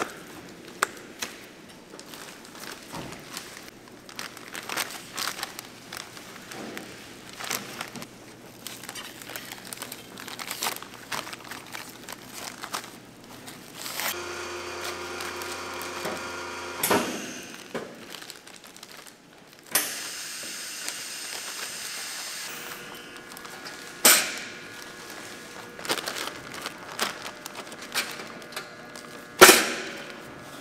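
Plastic bags of raw beef rustling and crinkling as they are handled, with clicks and knocks on steel and plastic surfaces. Partway through a machine hums steadily for about three seconds, and a little later something hisses for about two seconds; sharp knocks near the end are the loudest sounds.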